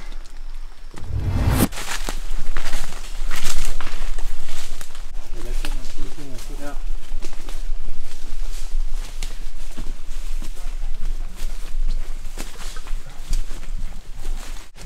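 Footsteps and the rustle and crackle of leaves and twigs on a jungle trail, in short, irregular steps. A heavy low thump comes about a second and a half in.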